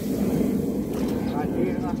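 Wind rumbling steadily on the microphone, a low noise with no clear beat. A faint voice speaks briefly in the second half.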